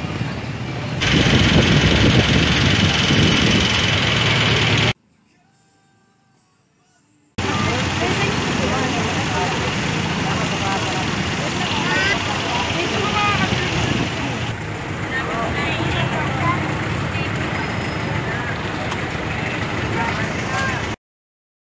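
Busy street-market ambience: many voices chattering over traffic and idling vehicle engines. The sound drops to near silence for about two seconds, starting about five seconds in.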